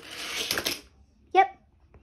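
A die-cast Hot Wheels toy car rolling along a plastic track for just under a second, a rattling hiss that grows louder and then stops. A brief vocal sound follows about a second and a half in.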